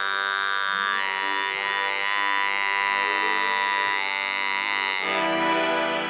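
Tuvan throat singing: one long held drone, rich in overtones, with a bright ringing overtone band high above it. The texture shifts about five seconds in.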